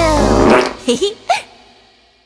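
Cartoon fart sound effect, a falling pitch into a noisy burst, followed by two short vocal yelps about a second in, after which the sound dies away.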